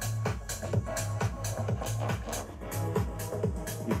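Electronic house track played through a JBL Xtreme 4 Bluetooth speaker at half volume: a steady dance beat over an evenly pulsing deep bass.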